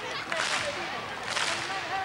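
Large stadium crowd clapping in unison, about once a second, amid crowd cheering.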